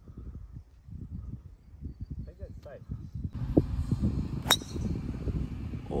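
A golf driver striking a ball off the tee: one sharp crack about four and a half seconds in, over a low background rumble.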